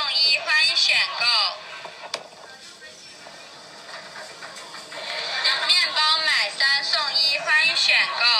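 A Chinese vending machine's pre-recorded voice prompt telling the customer to pay, played back from an iPhone voice memo through the phone's speaker. The prompt runs for about a second and a half, then after about four seconds of faint street noise it starts again.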